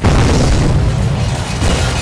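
Film explosion: a sudden loud boom that opens into a long, low rumble, mixed with background score music.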